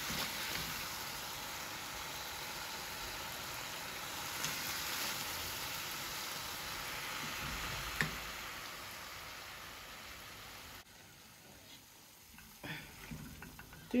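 Chicken stew sizzling steadily in a hot aluminium pot, with one sharp tap about 8 seconds in. The sizzle cuts off abruptly near 11 seconds, leaving it much quieter.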